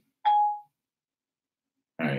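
A single short electronic chime from a mobile phone: one clear tone that fades out within about half a second.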